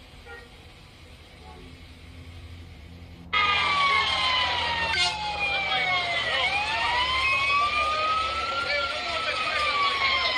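An emergency vehicle's siren cuts in suddenly about three seconds in and wails slowly, its pitch falling, then rising, then falling again.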